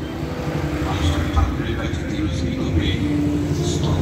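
A low, choppy rumble of wind buffeting the microphone, with indistinct voices in the background.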